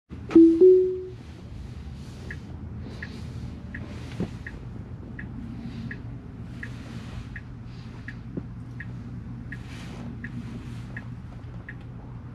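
Tesla's turn-signal ticking, about three ticks every two seconds, over a steady low cabin hum while the car waits to turn. A short rising two-note chime sounds in the first second.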